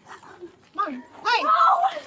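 Speech: a man says "come on," then a woman cries out a long, drawn-out "no" near the end.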